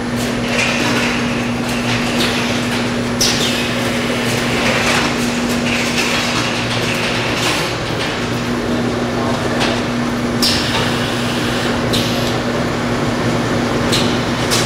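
Liquid bottling line running: a steady machine hum over a constant clatter, with small knocks as bottles jostle on the rotary accumulation table. A few short hisses come through, about three seconds in and again near ten and twelve seconds.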